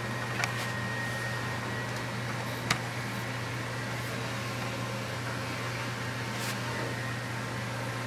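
Steady low machine hum with even room noise, broken by a few light clicks; the sharpest comes a little before three seconds in.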